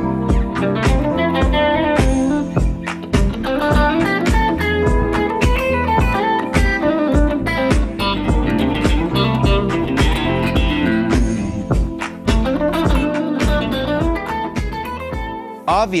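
Electric guitar jamming over a backing track with a steady drum beat and bass, played back through a Bose L1 Pro32 line-array PA speaker.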